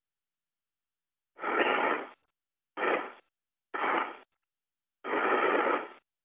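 Four short bursts of hiss over a space-to-ground radio loop, each cutting in and out abruptly with dead silence between; the last and longest comes about five seconds in.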